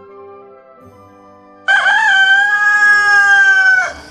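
A rooster crowing once, loud: a single call of about two seconds that wavers at the start, then holds steady and falls away at the end.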